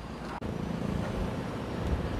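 Steady, low rumbling background noise, with a sharp break just under half a second in.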